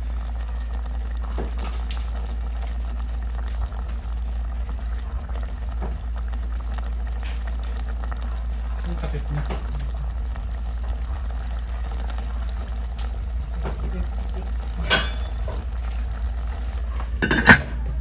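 Mussels in tomato sauce simmering in a stainless steel pot, a steady bubbling over a low hum. Near the end come a couple of sharp metal clinks, the pot's lid being put on.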